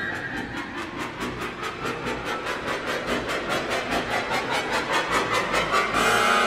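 Contemporary orchestral music from a trombone concerto: a dense, sustained orchestral texture under a fast, even ticking pulse of sharp percussive strokes, growing a little louder toward the end.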